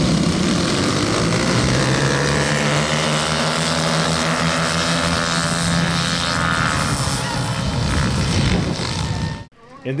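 A pack of small youth dirt bikes racing, several engines revving at once with their pitch rising and falling. It cuts off abruptly just before the end.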